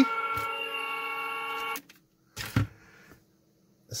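Hockey goal light's electronic horn sounding one steady chord, which cuts off abruptly about two seconds in. A short knock follows.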